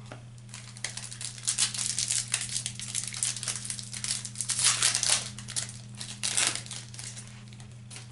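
Foil baseball card pack wrapper being torn open and crinkled by hand, in irregular crackly bursts, over a steady low hum.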